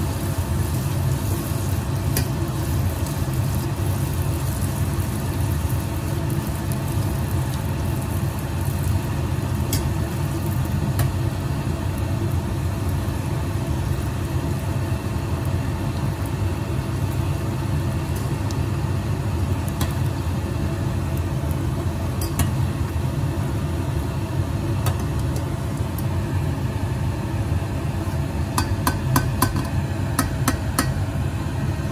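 Poori deep-frying in hot oil in a steel pot: steady sizzling and bubbling over a constant low hum, with a few sharp clicks near the end as the slotted steel spoon knocks against the pot.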